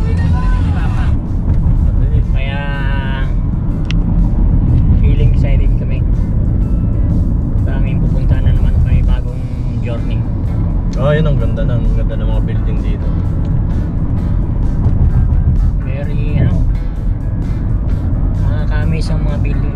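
Steady low rumble of road and engine noise heard inside a moving car's cabin, with a few brief snatches of voice.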